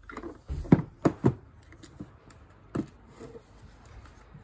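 A fabric-covered cutlery canteen case being handled and opened: a few knocks and clicks in the first second and a half, and one more about three seconds in.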